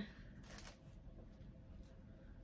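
Faint rustling of doll clothes and tissue paper as they are handled and pushed into a cardboard box.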